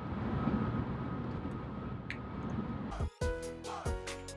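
Steady low road and engine noise inside a car's cabin on the highway. About three seconds in, after a brief dropout, music with a steady beat comes in over it.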